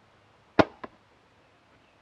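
Martin compound bow shot: a sharp snap as the string is released about half a second in, then a fainter smack a quarter second later as the arrow strikes the target about 20 yards away.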